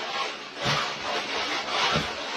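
Roof snow rake with a fabric slide chute being pushed up into deep roof snow: a rough, continuous scraping as the cutter slices through packed snow and slabs slide down the chute. There are two dull knocks, one about a third of the way in and one near the end.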